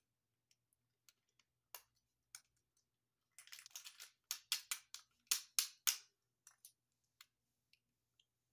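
Small plastic Minecraft creeper toy figures clicking as they are handled and turned in the hands: scattered light clicks, a quick run of them about three and a half seconds in, then a string of sharper clicks.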